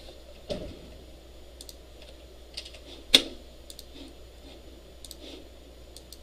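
Computer keyboard being used in short, sparse strokes of key taps and clicks while code is edited, with one sharper, louder click about three seconds in.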